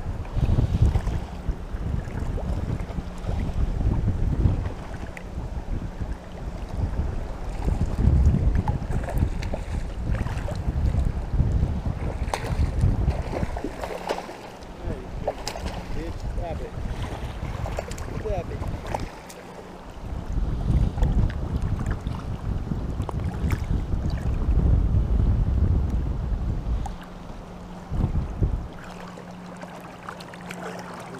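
Wind buffeting the microphone in long gusts with short lulls, over choppy water lapping and splashing close by.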